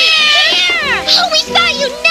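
Cartoon horse whinny: a high, wavering call that falls steeply in pitch over about a second, followed by shorter wavering cries, over background music.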